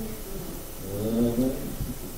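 A faint, brief murmured voice about a second in, over quiet room tone.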